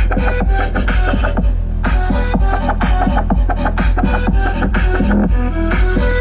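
Music with a strong beat played loud through a car sound system with four Pioneer Premier subwoofers, the deep bass very heavy. The higher sounds drop out briefly about two seconds in.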